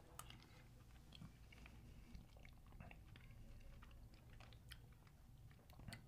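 Faint chewing of a mouthful of chili, with a few soft, scattered clicks.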